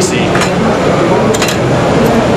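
Indistinct background voices over steady, loud hall noise.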